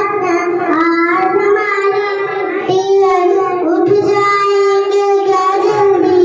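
A young child singing into a microphone, holding long notes that bend slightly in pitch.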